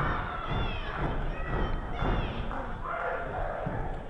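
Live audience members shouting and calling out in a small hall, with dull thumps from the wrestling ring underneath.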